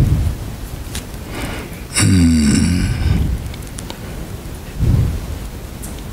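Breaths and mouth noise close to a microphone: low puffs of rumble at the start and again near five seconds, over a steady hiss. About two seconds in comes a short throaty voiced sound lasting about a second.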